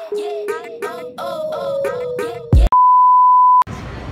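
Intro music with a bending, voice-like melody that stops abruptly about two and a half seconds in. A short low thud follows, then a loud, steady single-pitch beep like a test tone lasting about a second, which cuts off suddenly into street noise.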